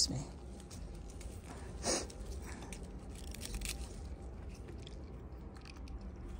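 Faint rustling of pea vines with crisp crunching snaps as pea pods are picked off by hand, one louder crunch about two seconds in.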